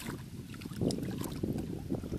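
Hands sloshing and squelching through shallow muddy water while groping for fish, with small irregular splashes that swell about a second in.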